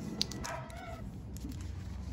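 Plastic card sleeves rustling and clicking as photocards are slid into binder pockets, with a sharp click just after the start. About half a second in, a short, high, wavering call is heard for under a second.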